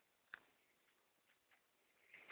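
Near silence, broken by a single faint click about a third of a second in.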